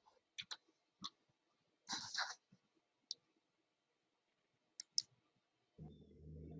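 Faint computer mouse clicks, about half a dozen spread irregularly, as the presenter works the slideshow to move on to the next slide, with a short rustle about two seconds in.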